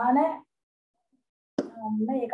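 A woman speaking Sinhala, her voice rising in pitch, then cut off by about a second of dead silence; speech resumes near the end with a sharp pop at its onset.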